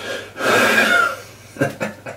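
A man's forceful, cough-like huff of breath lasting under a second, followed by a few short clicks near the end.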